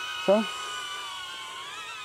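High, steady propeller whine of two small selfie drones, a DJI Neo and a HoverAir X1, hovering close by, several tones wavering slightly in pitch in the second half.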